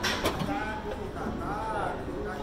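Indistinct voices in a gym over a steady background hum, with a brief sharp noisy burst just after the start.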